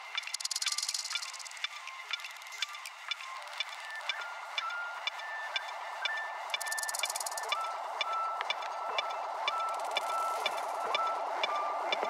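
Melodic electronic music played live on synthesizers, in a stripped-back passage with the bass filtered out. It has a steady ticking beat, a short stepping synth melody and a few swells of high hiss.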